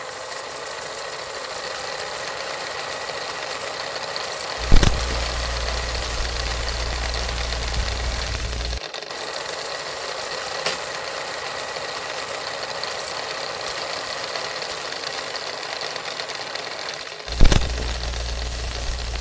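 Steady static hiss, broken by two sharp clicks about four and a half and seventeen seconds in. After each click a low hum comes in, and the first hum cuts off about four seconds later.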